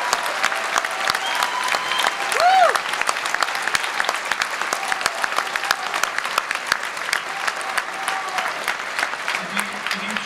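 Audience applauding with a few cheers and whoops early on. The clapping eases slightly, and a man's voice starts speaking again near the end.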